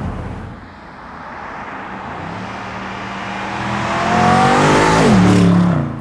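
BMW M850i Convertible's twin-turbo V8 accelerating as the car approaches, the engine note growing steadily louder and rising slightly in pitch, then dropping sharply in pitch as the car passes by near the end.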